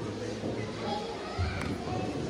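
Indistinct murmur of voices, children's among them, in a large echoing church hall, with a single light knock about one and a half seconds in.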